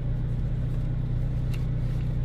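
Steady low hum of a parked car's idling engine, heard from inside the cabin, with a faint tick about one and a half seconds in.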